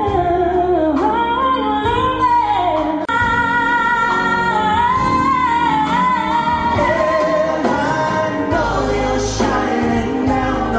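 Live pop concert music: singers with microphones performing a 90s medley over a backing band, with sung melody lines passing between voices. There is a momentary dropout about three seconds in.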